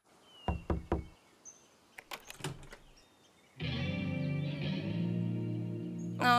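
Two knocks on a wooden door about half a second in, followed by a few faint clicks. About three and a half seconds in, a sustained music chord begins and holds.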